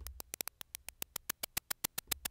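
Shaker-type percussion synthesised from white noise in Ableton's Operator: a quick run of short hissy ticks, about eight to ten a second, with the occasional faster roll. The synth's attack is raised to soften each hit.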